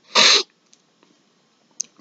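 A man's short, sharp breath noise, a single hissing burst lasting about a third of a second, then a faint mouth click near the end.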